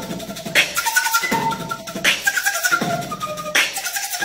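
Recorder played while beatboxing through it: short recorder notes over percussive beat sounds from the player's mouth, with a strong hit about every second and a half.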